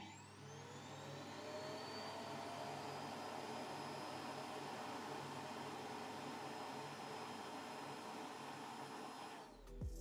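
The Migo Ascender robot vacuum's docking station runs its dust-collection suction motor to empty the robot's dust bin. It makes a steady whir, with a whine that rises in pitch over the first couple of seconds and then holds, before cutting off suddenly near the end.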